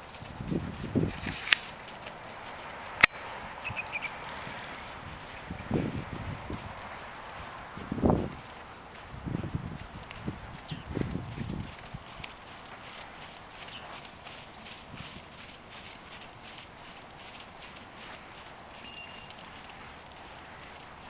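Horse walking under a rider on a sand arena: muffled hoofbeats in the sand, with a few louder low thuds in the first half and one sharp click about three seconds in.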